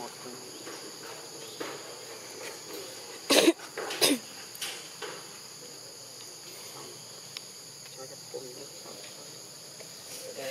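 Steady outdoor insect chorus holding several high, unbroken tones. Two short, loud sounds break in about three and a half and four seconds in.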